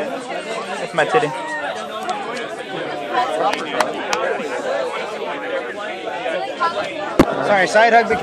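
Indistinct chatter of several people talking at once, with a single sharp knock near the end.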